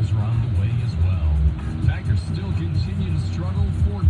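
Music with a voice over it, playing from a car radio inside a moving car's cabin.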